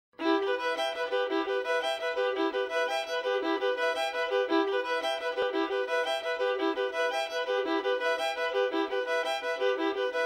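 Background music: a violin playing a quick, evenly pulsing run of notes.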